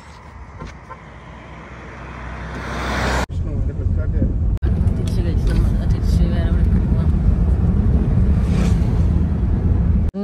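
Roadside traffic noise swelling over the first three seconds. After a cut, a steady low rumble of road and engine noise inside a moving car, with faint talk under it.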